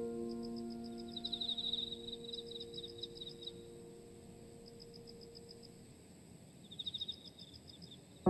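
The last piano chord of a slow, soft piece fading away over about six seconds. Under it, a faint nature-sound bed of high, evenly repeated chirps and short quick trills carries on into the quiet.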